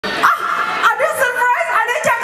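High-pitched human voices calling out in short, overlapping yelps that slide up and down in pitch.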